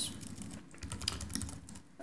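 Computer keyboard typing: a run of light key clicks.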